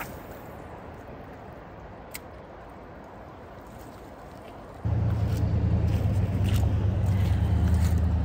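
Steady rush of a flowing river, with a single sharp click about two seconds in. About five seconds in, a loud low rumble sets in suddenly and stays, with a few more light clicks over it.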